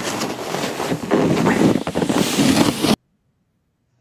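Wind rushing over an outdoor microphone, a loud rough noise that cuts off suddenly about three seconds in.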